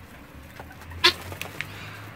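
A bird in a flock of chickens and helmeted guineafowl gives one loud, very short call about halfway through, followed by two fainter short calls.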